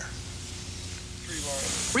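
Television sound in the gap between the anchor's introduction and a news report: a faint steady hum and low background. About one and a half seconds in, a steady high hiss comes up as the taped report begins.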